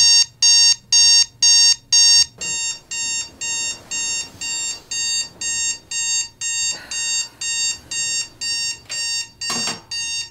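Digital alarm clock beeping in a fast, even rhythm of about two shrill beeps a second. The beeps drop to a quieter level about two seconds in and carry on steadily, with a couple of soft thumps near the end.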